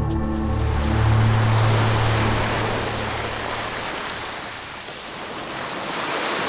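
Waves washing onto a sandy beach, a steady rushing wash that swells up in the first second as the low tones of background music fade out over the first few seconds.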